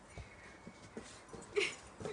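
Samoyed dog whimpering with a thin, high whine, then one short, louder yip about a second and a half in.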